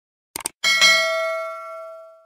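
A quick double click, then a bright bell ding struck twice in quick succession and left ringing, fading out near the end: the click-and-bell sound effect of a subscribe-button animation.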